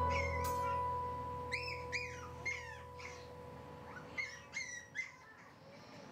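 Teacup poodle puppy giving short, high whimpers that fall in pitch, about seven in two quick runs, over fading background music.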